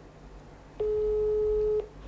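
A single steady ringback tone, about a second long, from an iPhone on speakerphone while a call to the board rings, just before it is answered.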